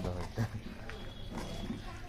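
A person's voice in short stretches, over a steady low hum.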